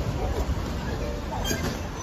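Steady low rumble of street noise picked up on a handheld phone while walking, with a sharp click about one and a half seconds in.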